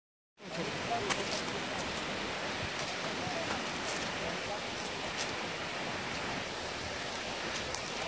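Steady rushing of a tall waterfall pouring down a cliff face onto rock.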